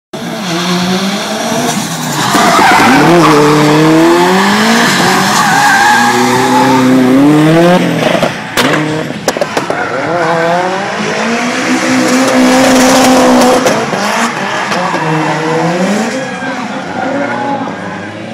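A car drifting: its engine revs hard, rising and falling again and again, over tyre squeal and skidding, with a few sharp cracks about halfway through.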